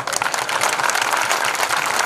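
Audience applauding, a dense patter of many hands clapping that breaks out suddenly and carries on at an even level.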